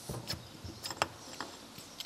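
Faint, scattered metallic clicks and clinks as a loosened nut is spun off by hand and the flange slid off the splined shaft of a Mazda MX-5 differential, the sharpest click about a second in.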